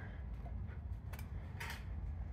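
A few faint, short clicks from the aluminum gas cap being handled and turned on the motorcycle's plastic fuel tank, over a low steady hum.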